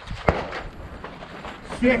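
A single sharp crack about a quarter second in, followed by a short ring-out.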